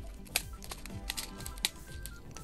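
Plastic sequins clicking against a stitched clear acetate pocket as they are handled and tipped out, a string of irregular light clicks. Faint background music plays underneath.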